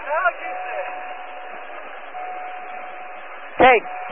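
Open aviation radio channel hiss with the narrow, tinny band of a radio feed, and a thin steady tone that comes and goes. A man's voice is heard briefly at the start and again near the end.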